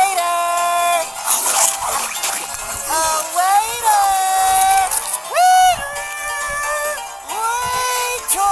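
High-pitched cartoon voices let out a string of long whooping yells, about five of them and each held for up to a second or so, over background music.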